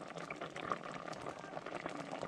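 A pot of smoked fish boiling in a thick yellow sauce: faint, steady bubbling scattered with small pops.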